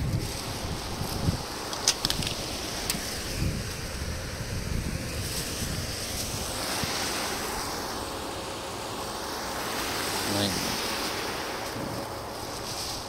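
Wind buffeting the microphone over a steady rush of water, with a plastic bag rustling in hand. A couple of sharp clicks come about two and three seconds in.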